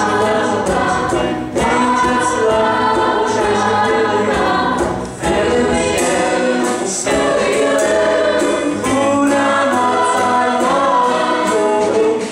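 Live stage-musical singing: a group of voices sings sustained phrases over instrumental accompaniment, with short breaths between phrases about a second and a half in and again around five seconds in.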